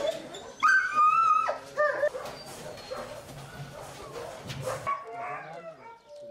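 Kennelled dogs calling, with a loud, high-pitched whine that lasts about a second, starting just over half a second in, followed by shorter calls around two seconds in.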